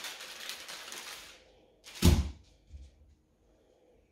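Wax paper crinkling as a wax-coated cheese is pulled off it, then a single heavy thunk about two seconds in as the cheese is set down on the bench, with a lighter knock just after.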